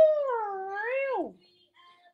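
A woman's voice making a long, swooping "woo" sound effect: it rises, dips, rises again and then falls away, ending a little over a second in.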